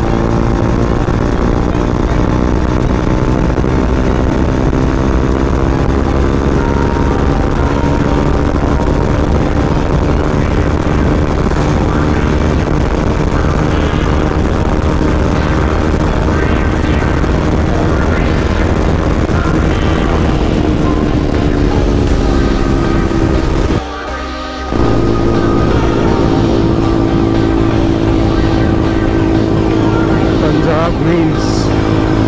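KTM Duke 200's single-cylinder engine running steadily at highway speed, with heavy wind rush on the rider-mounted microphone. The sound dips briefly for about a second late on, then the engine note climbs near the end.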